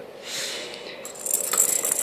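Ball rolling around the plastic track of a circular cat toy, the small plastic pieces inside it rattling, starting about a second in and going on steadily.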